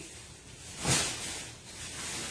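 Plastic shopping bag rustling as it is carried, with one louder rustle about a second in.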